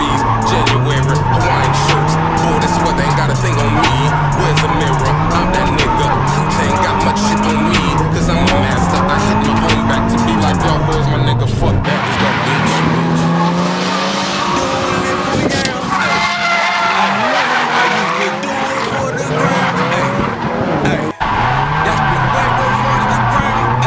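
Turbocharged SR20DET four-cylinder of a Nissan 180SX drift car heard from inside the cabin, revving up and down repeatedly as it is held through drifts, with tyre squeal. About halfway through the sound switches to trackside, where another car's tyres squeal through a drift. The in-car engine sound returns near the end.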